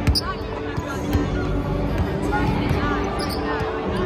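Basketball dribbled on a hardwood court, a few sharp bounces standing out over the arena's music and chatter.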